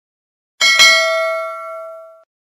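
Notification-bell sound effect: a bright metallic ding, struck twice in quick succession about half a second in, ringing out and fading over about a second and a half as the bell icon is switched on.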